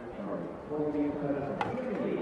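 Indistinct male speech over the general noise of the venue, with no clear words, and a brief click about one and a half seconds in.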